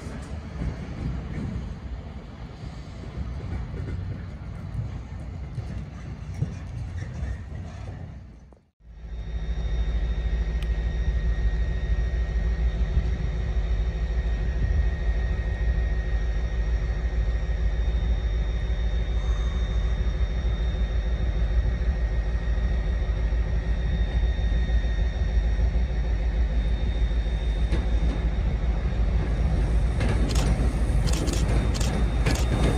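Diesel train rumble as a locomotive-hauled train runs through the station. It breaks off suddenly at an edit about nine seconds in, followed by a loud, steady diesel engine rumble with a constant high whine.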